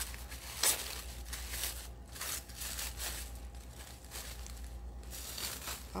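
Tissue paper crinkling and rustling in irregular bursts as a tissue-wrapped bundle is pulled open, with one sharper rustle near the start.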